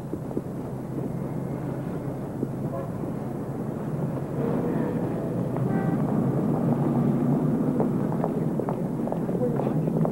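City street traffic ambience, a steady rush of noise that grows louder about four seconds in, with faint voices under it.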